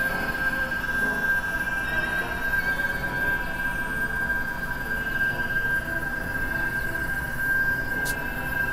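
Experimental electronic drone music: a steady high tone over a dense, noisy low bed, with fainter steady tones beside it and faint warbling tones higher up.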